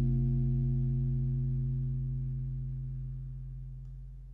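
The final chord of a jazz guitar trio, electric guitar and bass, ringing out after the band's last hit and fading steadily away.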